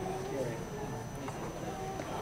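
Indistinct background chatter of several people's voices, with a few faint taps.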